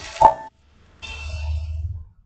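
A single short pop, then about a second of low rumble and faint breathy hiss on a close microphone, typical of a narrator's mouth and breath between sentences.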